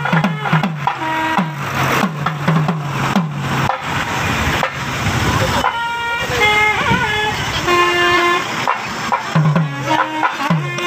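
Procession drums beating a steady rhythm, each low stroke dropping in pitch, over crowd noise. A little over halfway the drumming gives way to a few long, pitched horn notes, one bending downward, and the drum strokes return near the end.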